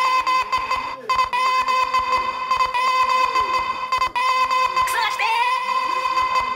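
Live music from a solo performer with an acoustic guitar and a sampler pad: a high, steady held note repeated in long phrases of a second or more with brief breaks, over fast percussive clicking.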